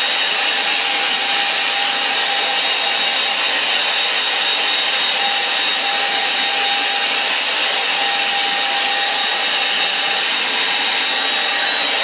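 Handheld hair dryer blowing steadily at an even pitch, a rush of air with a faint steady whine in it.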